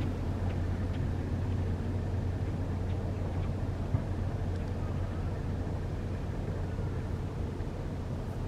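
Steady low engine rumble from shipping in the channel, with one short tap about four seconds in.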